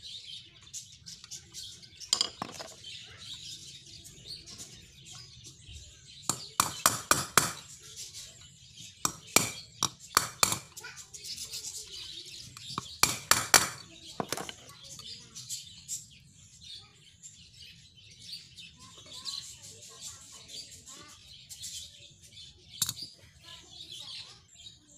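Steel pin being tapped with a claw hammer into the widened hole of an air rifle's pump lever, to test its fit. The taps come as several short bursts of sharp metallic clinks a few seconds apart. Birds chirp in the background.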